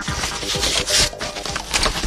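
Motorcycle with a concrete-mixer drum on its sidecar frame running along a dirt track, heard as an irregular rattling clatter, with background music underneath.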